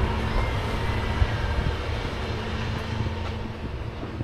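Steady low engine rumble with a constant low hum, easing off slightly near the end.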